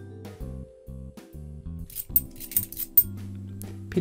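Metal 50p coins clinking against one another as a handheld stack is sorted, with a run of sharp chinks about two to three seconds in, over lounge background music with a steady bass line.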